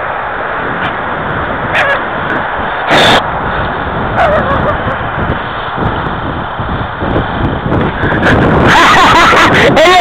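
Wind buffeting the microphone in a steady rush, with a sharp knock about three seconds in and a man laughing near the end.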